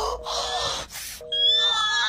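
Telephone line tone beeping in two-note pulses about once a second, the sign that the call has been cut off. A shrill, held high wail joins in about a second in, over the beeps.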